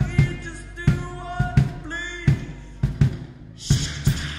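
Live rock band playing a mid-tempo beat: bass drum and snare hits about twice a second under sustained keyboard and guitar chords, with a cymbal crash near the end.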